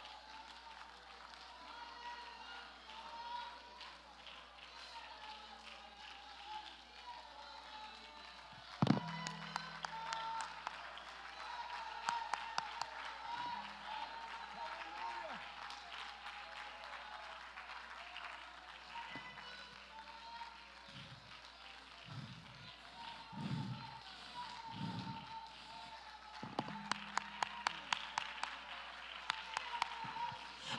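A congregation worshipping quietly: scattered distant voices calling out and murmuring in prayer. There is a single sharp thump about nine seconds in, and near the end a run of hand claps, about three a second.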